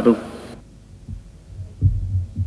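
A man's question trails off, then low thuds and a rumble of microphone handling noise come through the PA, building from about a second in as the speaker's microphone is picked up.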